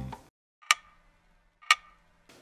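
Background music fades out at the start, then a clock-tick sound effect: two crisp ticks exactly a second apart, marking the passing of time.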